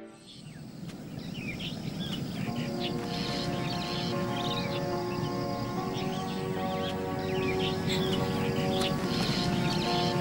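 Many small birds chirping over a steady outdoor background hiss, with soft music of long held notes coming in about two and a half seconds in.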